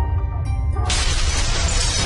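Intro music over a steady deep bass, with a shattering sound effect that breaks in suddenly just under a second in and carries on as a long breaking sound.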